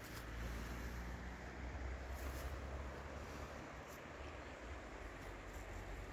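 Quiet outdoor ambience: the faint, steady rush of a shallow, low-water mountain river running over stones, with a low rumble underneath.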